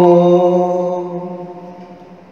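The last held note of a slow sung devotional refrain, a steady chord that fades out gradually through the second half.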